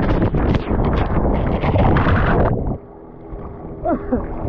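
Loud wind buffeting and splashing water on an action camera as an inflatable towable tips its riders into the sea. About two-thirds of the way in, the sound suddenly drops and turns muffled as the camera goes under the water.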